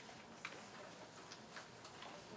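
Near silence: quiet room tone with a few faint, irregular small ticks and clicks, the sharpest about half a second in.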